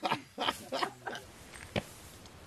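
Short, indistinct vocal sounds from a man, then a single sharp click about three quarters of the way through, and a low background hiss.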